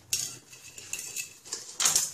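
Stainless steel mixing bowl knocked twice while a raw lamb shoulder is handled in it: once just after the start, leaving a faint metallic ring, and again near the end.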